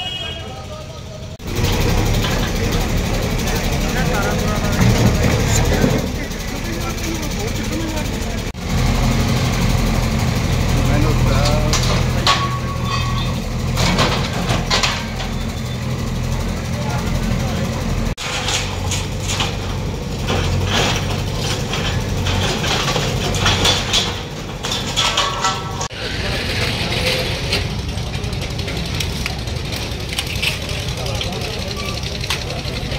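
Diesel engine of a JCB backhoe loader running steadily under load while it demolishes a shopfront, with occasional knocks and clanks from the breaking structure. Voices in the background.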